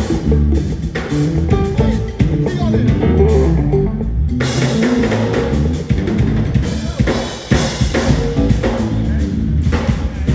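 Live band playing: a drum kit with bass drum and cymbals over a bass line and keyboard chords. The cymbals and upper drum hits drop out briefly in the middle, then the full kit comes back in about four and a half seconds in.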